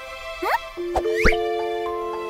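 Cartoon sound effects over light background music: two quick rising pops about three-quarters of a second apart, with short knocks near them.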